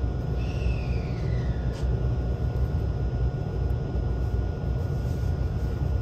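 Cabin noise inside a JR 383 series Limited Express Shinano train pulling slowly away from the platform: a steady low rumble of the running gear, with a brief falling whine in the first two seconds and a single click near two seconds in.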